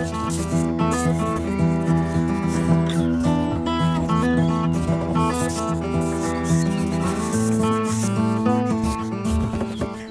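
Background instrumental music with a steady bass line and melody, the bass shifting to a new note about seven seconds in. Short high hissing strokes recur through it.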